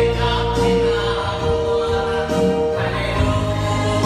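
Worship song sung into a microphone by a man, with more voices singing along, accompanied on a Yamaha electronic keyboard; one long held note carries through the first half.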